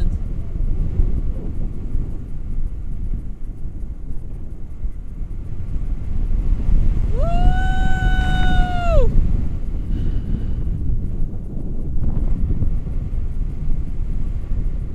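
Wind rushing over an action camera's microphone in paragliding flight, a steady low rumble throughout. About seven seconds in, a person's voice holds a high cry for about two seconds, gliding up at the start and down at the end.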